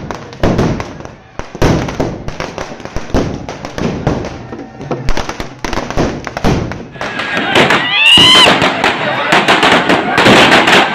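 Strings of firecrackers bursting in rapid, irregular bangs, with a crowd's voices under them. After a cut about seven seconds in, the bursts go on, and a brief high call rises and falls just after it.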